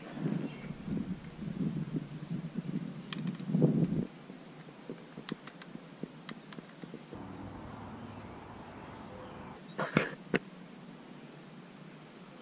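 Rustling and crunching of someone moving through undergrowth and leaf litter for the first few seconds. This is followed by quieter outdoor ambience with a few faint ticks, and two sharp clicks close together about ten seconds in.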